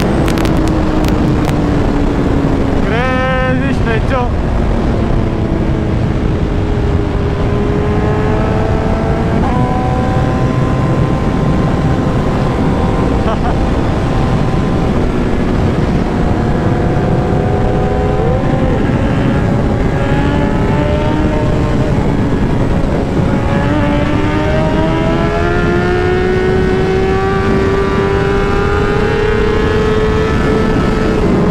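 Large sport motorcycle engine running at speed, its pitch slowly rising and falling as it pulls through the gears, with a quick sharp rise and fall in revs about three seconds in. Heavy wind rush over the helmet-mounted camera runs underneath.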